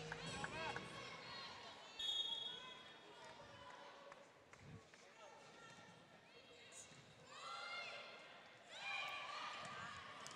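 Faint volleyball arena sound picked up by the broadcast microphones between rallies: distant crowd and player voices, a few soft thumps, and a short high tone about two seconds in.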